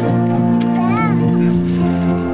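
High school concert band playing a slow passage of sustained chords. About halfway through, a high voice from the crowd rises and falls once.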